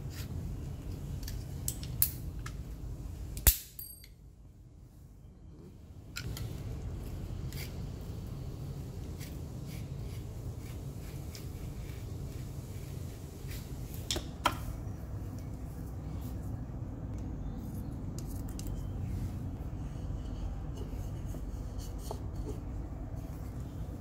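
Snap-off utility knife: a few light clicks, then one sharp metallic snap with a brief ring about three and a half seconds in, as the dull blade segment is broken off to expose a fresh edge. A steady low noise with an occasional light click follows while the knife trims fabric.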